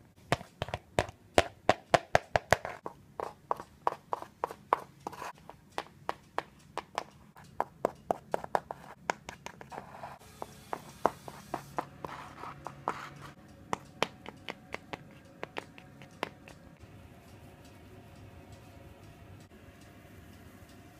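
Hard plastic toy horse hooves tapped on the floor by hand to mimic walking: quick clicks about two to three a second, thinning out and stopping after about sixteen seconds.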